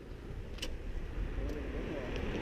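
Low engine rumble of a motor vehicle, growing slightly louder, with a single sharp click a little over half a second in.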